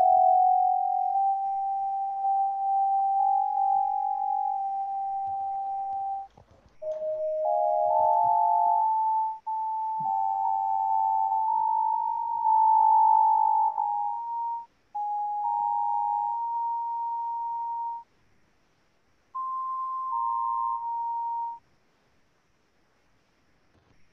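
Synthesized pure sine tones from a Csound sonification of stock-price data, with pitch following the price. Single steady whistle-like notes, sometimes two overlapping, step up and down and creep gradually higher. There are short breaks about a third of the way in and a longer pause near the end.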